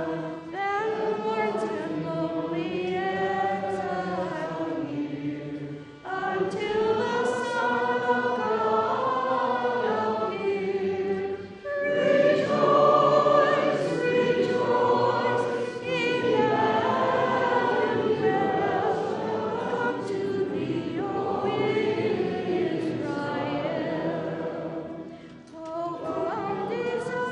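A congregation sings a hymn together in several voices, line by line, with short breaths between phrases. The singing grows louder about halfway through.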